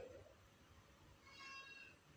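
Near silence, with one faint, short, steady-pitched tone about one and a half seconds in.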